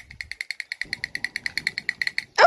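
Battery-powered drumming figure toy (a Motu character) beating its little drum in a fast, even rattle of about nine taps a second, each with a thin ringing ping.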